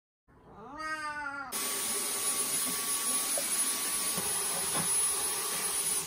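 A cat meows once, a drawn-out call that rises and falls in pitch. Then a handheld cordless vacuum cleaner switches on suddenly, about a second and a half in, and runs steadily with a thin high whine.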